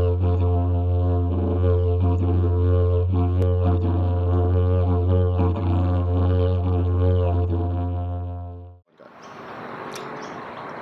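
Didgeridoo playing one steady low drone with rhythmically shifting overtones, fading out near the end. It gives way to a brief stretch of outdoor background noise.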